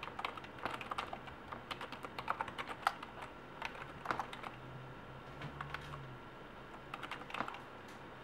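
Keystrokes on a computer keyboard: irregular bursts of typing as a command is entered, with a pause of about two seconds in the middle before a last short run of keys.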